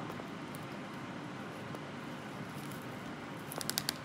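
Quiet handling noise of jute twine being wound and pulled around a bundle of bamboo sticks, over a steady low hiss, with a quick run of sharp clicks near the end.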